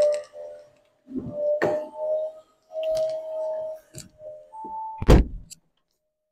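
Handling of a car door while getting into the cabin: several clicks and rattles over a series of short, held electronic tones, then one heavy thump about five seconds in.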